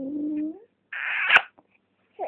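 A baby's long, drawn-out vowel-like coo, steady in pitch, rising slightly as it ends about half a second in. About a second in comes the short breathy smack of a kiss on the baby's cheek, ending in a sharp click.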